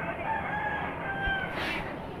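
A rooster crowing once, a drawn-out call of about a second, over a steady murmur of an outdoor crowd.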